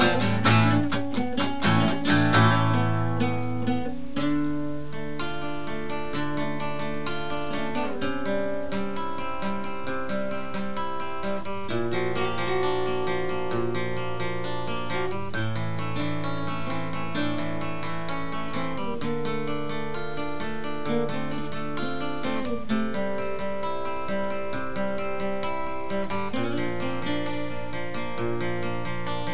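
Two acoustic guitars playing together. They strum hard for the first few seconds, then settle into a picked chord pattern that changes chord about every four seconds.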